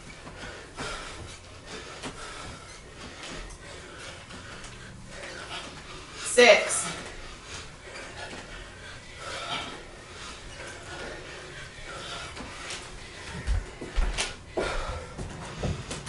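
Two people breathing hard and panting through a set of bodyweight squats, with one short, loud vocal sound falling in pitch about six seconds in. A few dull low thumps near the end.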